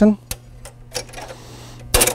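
Seeburg jukebox mechanism clicking as the J1 selection is made and the machine starts its cycle: a few light clicks, then one sharp, loud clack near the end, over a steady low hum.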